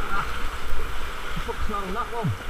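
Sea water sloshing and splashing against the rock walls of a sea cave, with a continuous low rumble.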